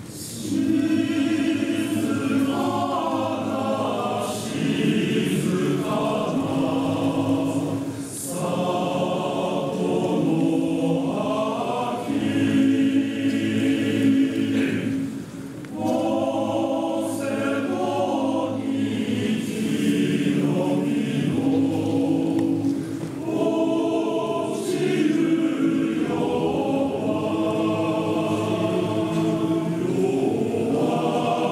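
Male-voice choir singing in parts, in long sustained phrases with brief pauses between them. The singing swells in about half a second in.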